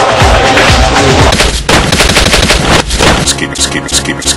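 Rapid machine-gun fire sound effect over music. About three seconds in it turns into a fast stuttering loop of a pitched sound, about six repeats a second.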